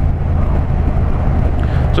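Yamaha MT-07 parallel-twin engine running steadily at a constant cruise through an Akrapovic 2-into-1 carbon exhaust, with wind noise over the microphone.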